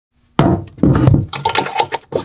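A hard plastic batting helmet handled against a wooden locker shelf: two heavy thunks about half a second apart, then a quick run of lighter knocks and clicks.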